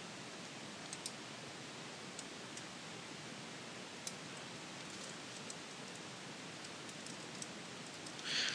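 Steady low hiss with a few faint, scattered clicks of a computer mouse and keyboard as text is selected and pasted.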